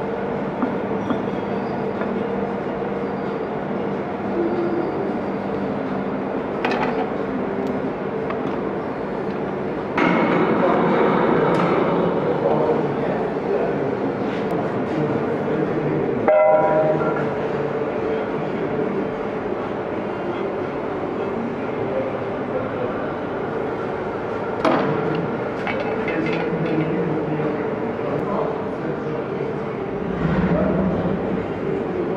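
Steady hum of workshop machinery holding a couple of steady tones, with a few sharp metal clinks and knocks as a cast-iron taper bush and pulley are handled.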